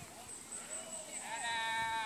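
One drawn-out call in the second half, lasting most of a second, rising at the start, held, then falling away, over faint distant voices.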